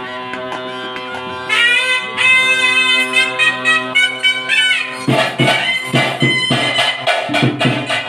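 Traditional temple music: a nadaswaram plays a sustained reedy melody over a steady drone, rising into a higher, ornamented passage about a second and a half in. About five seconds in, drums come in with a fast steady beat of roughly three strokes a second.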